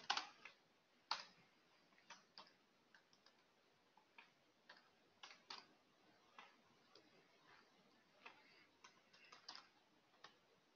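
Faint, sparse keystrokes on a computer keyboard: single clicks and short runs of two or three at uneven intervals, often about a second apart, while text is typed.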